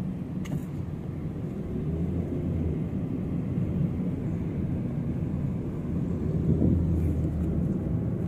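Steady low road and engine rumble heard inside a moving car, swelling slightly twice.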